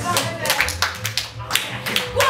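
Several people clapping their hands, a quick run of sharp claps a few per second.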